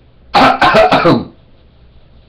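A man coughing: a quick run of several coughs lasting about a second, starting shortly after the start.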